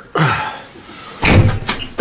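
The cab door of a Case 580 Super N loader backhoe pulled shut and slamming, one heavy thud about a second in, after a shorter knock near the start.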